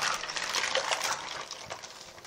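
A hand swishing through soapy water in a sink, stirring a pile of small plastic Littlest Pet Shop figurines that click against each other; it fades toward the end.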